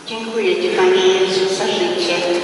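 A woman's voice starts singing, holding long steady notes that step from one pitch to the next.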